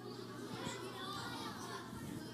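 Faint voices of a group of children calling out answers.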